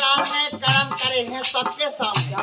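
A man singing a folk song over harmonium and dholak accompaniment, the voice's pitch bending and breaking between phrases.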